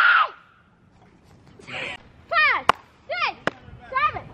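Children shouting and calling out, a loud shout at the start and then several short high-pitched calls that fall in pitch, with a few sharp knocks in between.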